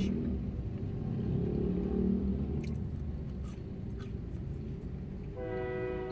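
A steady low rumble, then about five and a half seconds in a single short train horn blast, lasting under a second.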